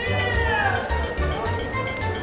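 Carnival-style circus music with a steady bass beat. In the first second a single high sound slides down in pitch over it.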